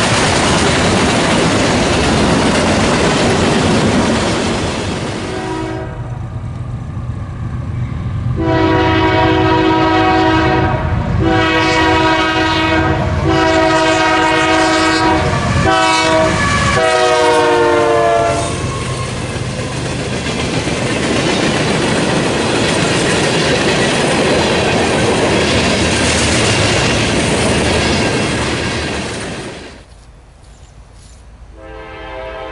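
Freight train autorack cars rolling past with wheel clatter. Then a Union Pacific diesel locomotive leading a freight train sounds its several-note air horn in five blasts, the fourth short and the last dropping in pitch as it passes. The locomotive and its train then rumble by until the sound cuts off just before the end.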